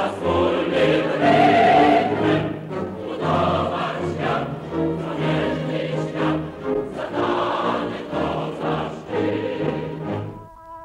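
Choral music: a choir singing sustained phrases over a bass line, a film soundtrack.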